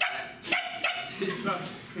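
A person imitating a chihuahua with their voice: several short, sharp yapping barks.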